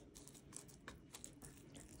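Near silence, with a few faint soft ticks and rustles of fingers sprinkling seasoning over the topped dough.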